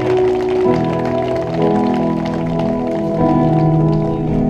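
Live worship band with acoustic guitar playing a slow instrumental passage of held chords, moving to a new chord about a second in and again shortly after.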